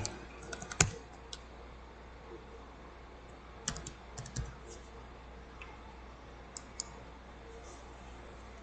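A few scattered keystrokes on a computer keyboard: a single tap about a second in, a quick run of taps around four seconds, and two more near seven seconds, over a low steady hum.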